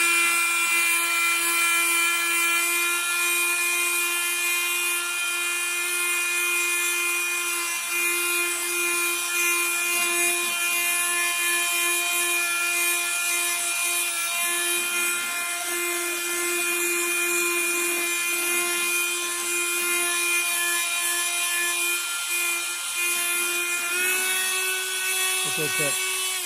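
Ridgid corded detail sander with a triangular sanding pad running steadily with a high-pitched whine while sanding dried spackling flush with model railroad rails. Its pitch steps up slightly near the end.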